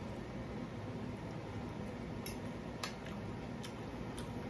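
A metal fork clicking against a dinner plate three times in the second half, over a steady low hum.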